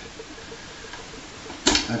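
Quiet room tone, then a single short knock about a second and a half in as the blender jar is handled on its base.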